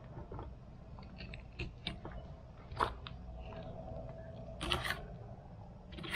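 Fillet knife cutting through the rib section of a black grouper fillet on a cutting board: scattered short crunches and scrapes as the blade works past the rib bones, the loudest about three seconds in and another near five seconds.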